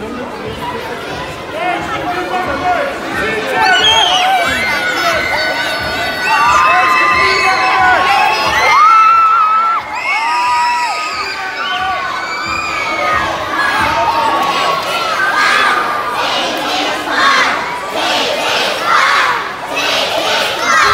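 A crowd of excited children shouting and cheering, many high voices calling out at once, louder from about four seconds in.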